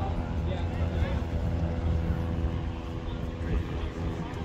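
A motor running steadily: a low hum over a constant deep rumble.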